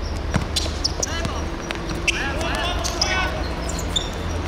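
Football kicked and passed on an artificial pitch, with sharp knocks of ball strikes, the loudest about two seconds in, and players calling out.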